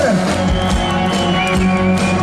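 Rock band playing live: electric guitar and bass over a steady drum beat.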